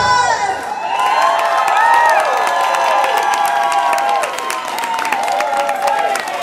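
A pop song ends about half a second in. An audience cheers, with many high-pitched screams and whoops over clapping.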